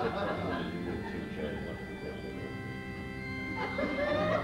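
Band keyboard playing a held church-style organ chord. It comes in just under a second in and stops shortly before the end, with voices around it.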